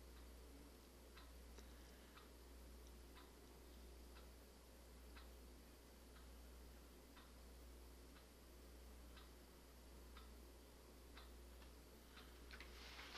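A clock ticking faintly and evenly, about once a second, over a low steady hum; otherwise near silence.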